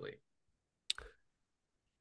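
A single short click about a second in, followed by a brief faint sound, in otherwise near silence.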